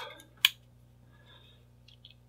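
A single sharp click about half a second in as the robot's power switch is flipped off, followed by faint handling sounds.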